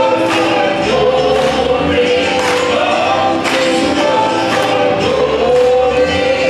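Gospel vocal quartet, three men and a woman, singing in harmony on held notes over accompaniment with a steady beat.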